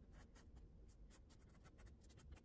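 Faint scratching of a soft pastel stick dragged across the painting surface in quick, short strokes, about five a second.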